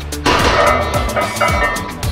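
A loaded barbell is set down on the floor about a quarter second in: a metallic clang from the weight plates that rings for about a second and a half. Under it, music with a beat of kick drums that drop in pitch and steady hi-hat ticks.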